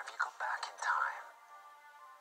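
A man speaking quietly for about the first second, over soft, sustained background music. The sound is thin, with no bass.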